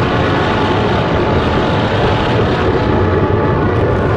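Loud, steady, heavily distorted rumbling noise with faint steady tones inside it: a logo's audio run through distortion effects.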